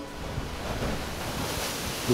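Ocean surf: a steady rush of breaking waves, growing a little louder toward the end.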